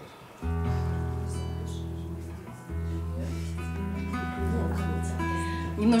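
Classical guitar: three chords strummed and left ringing, about half a second, nearly three and about four and a half seconds in, with a few higher notes over them. A voice comes in near the end.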